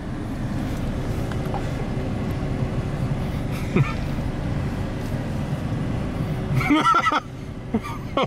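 Steady low rumble of a car running at a crawl, heard from inside the cabin. Near the end comes a short burst of a person's voice.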